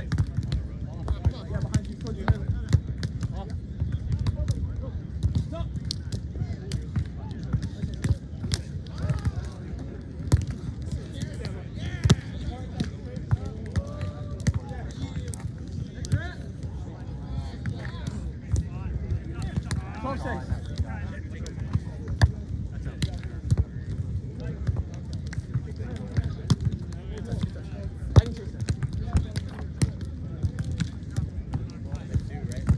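Beach volleyball play: a scatter of sharp slaps of hands striking the ball, with the loudest about two seconds in, near the middle and near the end, over a low rumble of wind on the microphone and faint voices.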